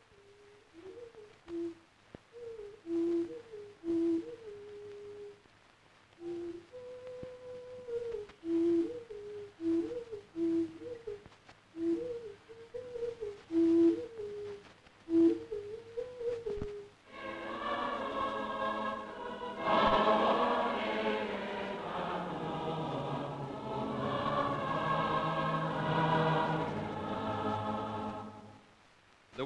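Tongan nose flutes (fangufangu) playing a soft, simple melody of short stepped notes. About seventeen seconds in they give way to a choir singing together.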